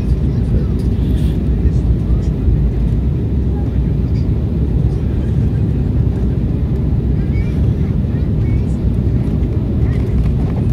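Steady cabin noise of an Embraer 190 airliner in flight, heard from a window seat inside the cabin: an even, deep rush of its two GE CF34 turbofans and the airflow over the fuselage while the aircraft is on its approach descent.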